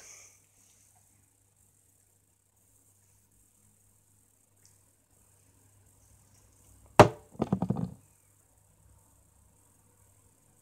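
Mostly quiet handling, then about seven seconds in a single sharp click, followed at once by a quick run of smaller clicks lasting under a second, as a small makeup container is handled.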